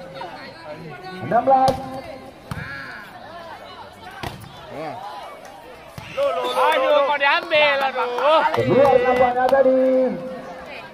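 A few sharp smacks of a volleyball being hit during a rally, then from about six seconds in loud shouting voices over the play.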